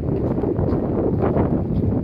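Wind buffeting the camera microphone: a loud, low, unsteady rumble.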